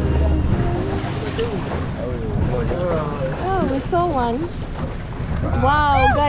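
Wind buffeting the microphone over the low rumble of a boat at sea, with people aboard talking from about two seconds in.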